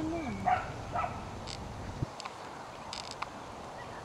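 Outdoor background with a low wind rumble on the microphone that cuts off suddenly about halfway through, a few faint short chirps in the first second, and scattered sharp clicks.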